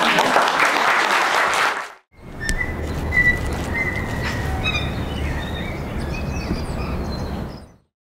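Audience applauding for about two seconds, then cut off. Birds chirping and whistling over a steady outdoor background rumble, ending just before the end.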